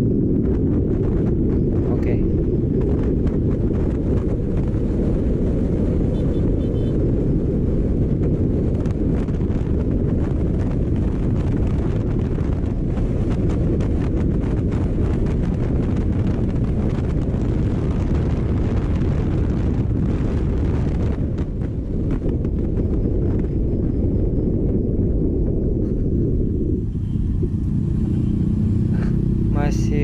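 Heavy wind rushing and buffeting over a body-mounted camera microphone while riding a Yamaha Aerox 155 scooter at speed, with its single-cylinder engine running underneath the wind noise. The wind eases somewhat near the end as the scooter slows.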